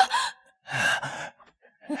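A wounded man's breathy gasp, followed by a shorter breath near the end, as he lies bleeding.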